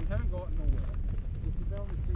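Quiet, indistinct talk between people, over wind rumbling on the microphone.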